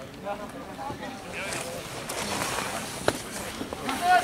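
Faint, indistinct voices from a rugby pitch over outdoor background noise, with one sharp click about three seconds in.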